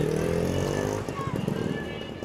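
A road vehicle's engine passing along the street, its pitch falling slightly and the sound fading away over the first second, followed by a quieter low rumble.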